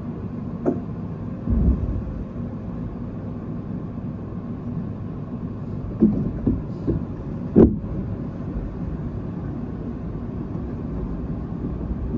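Tobu 10050 series electric train running, heard from its front cab: a steady low rumble of wheels on rail. Short clacks come from the wheels passing rail joints, in a cluster from about six seconds in, with the loudest knock just after seven and a half seconds.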